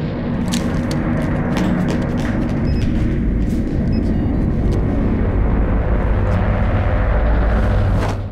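A loud, steady low rumble, with faint scattered clicks over it.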